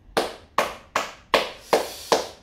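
One person clapping his hands five times at an even, unhurried pace, about two and a half claps a second.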